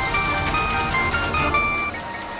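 Mobile phone ringing: a simple electronic ringtone melody of short, high beeping notes that step up and down in pitch, cutting off near the end.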